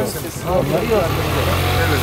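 Men talking over a steady low engine hum.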